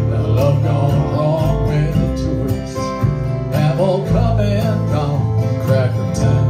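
Live country band playing: strummed acoustic guitars, electric guitar, upright bass and a hand drum keeping a steady beat.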